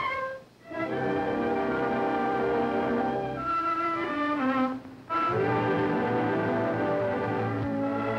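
Orchestral music with strings and brass playing under a film's opening title card, breaking off briefly twice: just after the start and about five seconds in.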